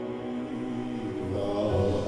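A low male voice singing a slow liturgical chant in long held notes.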